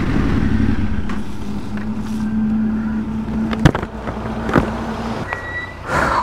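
A Yamaha Ténéré 700's parallel-twin engine running steadily, with two sharp clicks near the middle. The engine sound stops about five seconds in.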